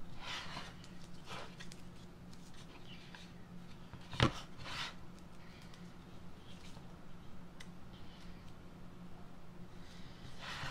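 A plastic stencil rustling as it is handled and smoothed down by hand onto a small wooden box frame, with one sharp knock just after four seconds in. A low steady hum runs underneath.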